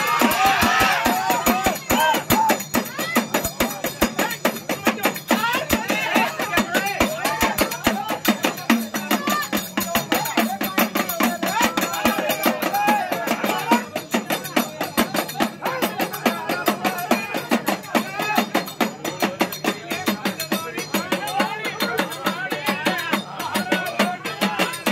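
Small hand-held drums beaten in a fast, steady rhythm, with men's voices singing and calling over the drumming.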